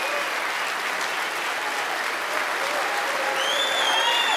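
Large crowd applauding steadily in a standing ovation, with a long, high held whistle rising above the clapping near the end.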